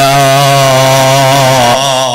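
A man's voice holding one long chanted note through a microphone and PA, its pitch wavering slightly, in the style of Islamic devotional recitation; it breaks off near the end over a steady low hum.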